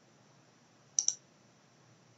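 Computer mouse button clicked, two quick clicks about a second in.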